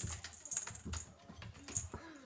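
A cat scrabbling on a hardwood floor while it grapples with a teaser toy: irregular quick clicks of claws and paws on the wood, with soft thumps.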